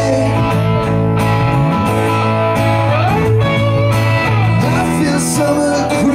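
Live band music from acoustic guitar and electric bass guitar, in a passage of the song with no lyrics sung.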